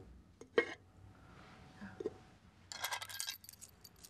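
A glass lid clinks against its decorative dish about half a second in, then a small bunch of metal keys jingles briefly near the end as they are picked up.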